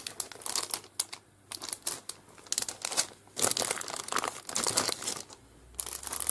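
Crinkling of clear plastic sticker packets as they are handled and flipped through in a stack, coming in several bursts with short pauses between.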